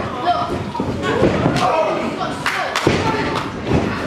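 Wrestlers' strikes and bodies hitting the ring, a handful of sharp smacks and thuds with two close together a little past the middle, over the voices of the crowd.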